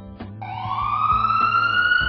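A cartoon emergency-vehicle siren sound effect starts about half a second in, one wail that rises in pitch and then holds, over light guitar music.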